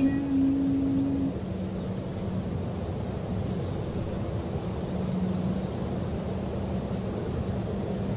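The last held note of the song ends about a second in, leaving a steady low outdoor rumble with a faint hum.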